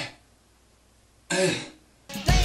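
A man clearing his throat: a short burst right at the start and another about a second and a half in, with a quiet room between.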